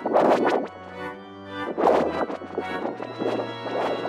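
Electric guitar played through effects pedals in short warbling phrases, three or four bursts timed like lines of dialogue, over a held low note.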